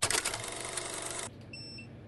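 Dense vinyl-record crackle that cuts off suddenly after a little over a second, followed by a faint short beep.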